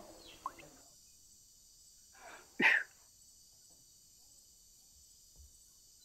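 Liquid poured from a plastic bottle into a clay cup, stopping about a second in. A little over two seconds in comes a soft breath, then a single short, loud burst of breath from a person.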